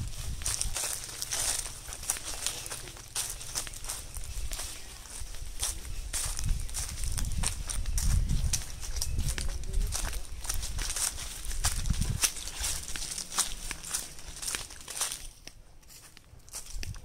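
Footsteps crunching over a thick carpet of dry fallen mango leaves: a dense, irregular run of dry crackles that thins out near the end.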